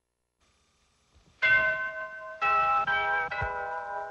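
Bell-like chime notes, four struck one after another about half a second to a second apart, each left ringing so that they build into a sustained chord, opening the theme music.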